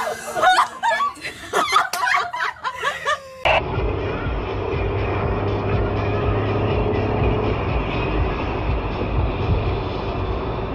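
Brief laughter and voices, then a sudden change about three and a half seconds in to steady road and engine noise from a car driving along a highway, with a low hum.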